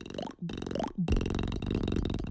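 Beatboxing: short rising buzzy vocal sounds cut by brief gaps, then a sustained buzzing bass from about a second in.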